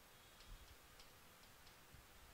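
Near silence with about five faint, short ticks of chalk striking and scratching a chalkboard as letters are written.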